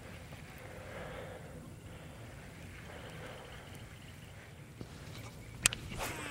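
Faint outdoor background with light handling of a fishing rod and reel, then one sharp click near the end as the reel is readied for a cast.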